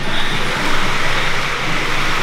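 Steady rushing noise of a moving vehicle, heard from inside it.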